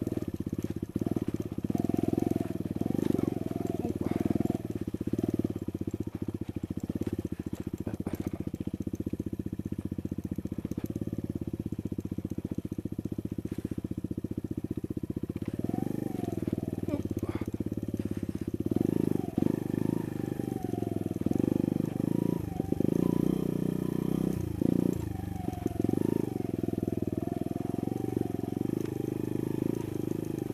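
Sinnis Blade X trail bike's engine running at low, steady revs, then from about halfway revving up and down again and again as the bike is ridden over rough, muddy ground.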